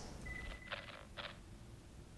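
Quiet room tone in a pause between speakers, with a faint brief high tone and two soft short sounds in the first second and a bit.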